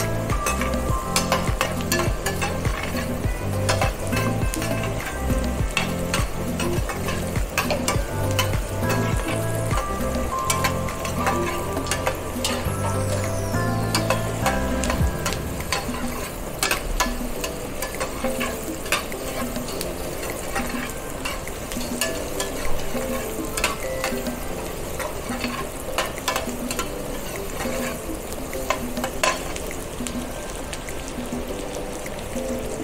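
Diced capsicum (bell peppers) sizzling in butter and garlic in a stainless steel frying pan as it is seared. A metal spoon clicks and scrapes against the pan again and again as the peppers are stirred.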